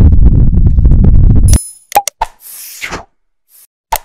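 Loud low rumble of wind on the microphone, cutting off suddenly about one and a half seconds in. After it come animated subscribe-button sound effects: a ringing click, two quick pops, a short whoosh, and more clicks near the end.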